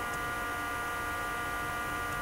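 Steady electrical mains hum made of several fixed tones, with no other sound.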